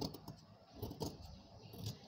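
Tailoring scissors snipping through blouse fabric, a run of short crisp cuts with the blades clicking, roughly one every half second.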